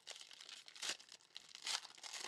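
Silver foil trading-card pack wrapper crinkling as it is handled and opened by hand, with two sharper crackles, one near the middle and one near the end.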